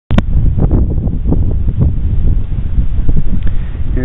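Wind buffeting the microphone in loud, gusty low rumbles, heard through the narrow, muffled audio of a digital rifle scope's built-in recorder, with a sharp click right at the start.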